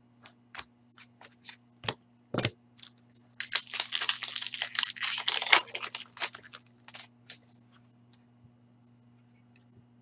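Foil wrapper of a sports card pack being torn open and crinkled by hand: about four seconds of dense crackling, starting around three seconds in. Light clicks of cards being handled come before it.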